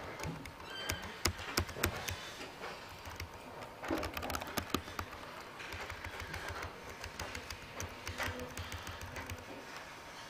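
Typing on a computer keyboard: irregular runs of keystroke clicks.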